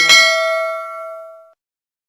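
A notification-bell chime sound effect: a single bright ding, struck once, that rings out and fades away over about a second and a half.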